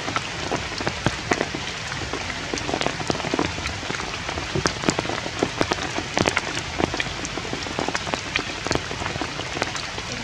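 Steady rain falling, a dense even patter with many separate drops ticking close by.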